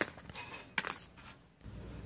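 Faint handling sounds of a test light and a motorcycle voltage regulator being moved about by hand, with a few light clicks, one at the start and a small cluster just under a second in.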